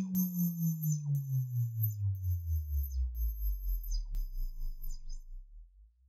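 The tail of an electronic music track: a low, pulsing synthesizer tone slides slowly down in pitch and fades out near the end. Faint high tones with short falling sweeps sound about once a second.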